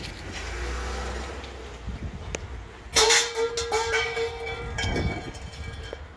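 A 1965 Ford F250 with its V8 idling low, then its horn honks about halfway through. The horn is one steady tone held for nearly two seconds, with a short break in it.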